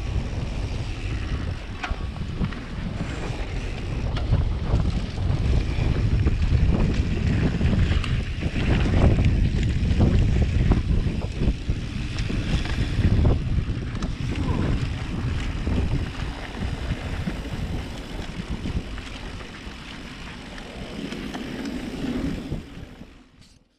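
Wind buffeting the microphone of a camera carried on a downhill mountain bike, with knobby tyres rumbling over a dusty dirt trail and the bike rattling over bumps. The noise drops for a few seconds near the end as the bike slows on flatter ground.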